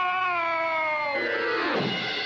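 Cartoon soundtrack effect: one long, drawn-out pitched note that sags slowly, then slides steeply downward from about a second in to a low bottom near the end.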